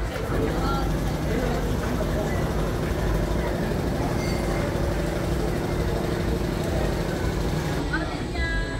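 A children's fairground ride's machinery running with a steady low hum, with people talking in the background.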